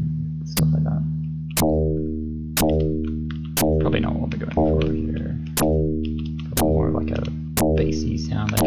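Dirtywave M8 tracker's FM synth playing a low D#2 note over and over, about once a second. Each note starts sharply and fades; its bright, gritty overtones die away quickly while the low tone holds.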